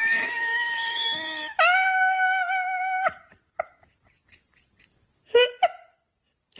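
A voice crying out in two long, high-pitched wails, the second a little lower and steadier, then a short cry near the end.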